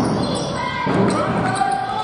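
A basketball being dribbled on a hardwood court, echoing in a large sports hall, with indistinct voices of players and spectators.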